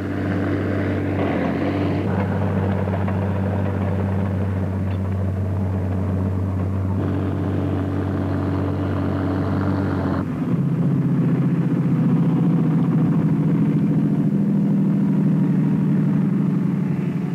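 Heavy diesel engine of a dragline excavator running steadily under load, its note changing abruptly to a different, higher pattern about ten seconds in.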